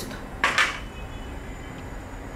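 A metal-headed cooking spoon set down on a plastic tray, making one short clatter about half a second in.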